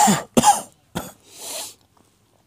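A person coughing: two loud coughs about half a second apart, then a short weaker one and a breath.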